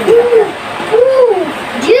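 A person's voice making two drawn-out "ooh" sounds, each rising and then falling in pitch, followed near the end by the word "juice".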